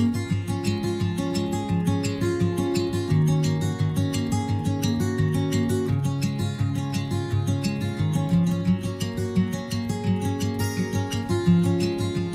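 Background music: acoustic guitar playing a steady plucked and strummed pattern.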